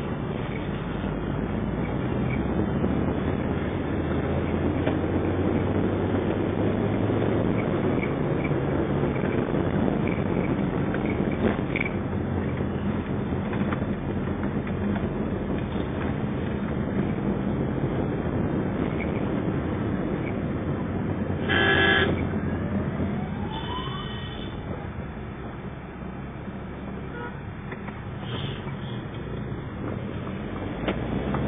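Steady engine and road noise from inside a moving car's cabin. About two-thirds of the way through, a vehicle horn honks briefly.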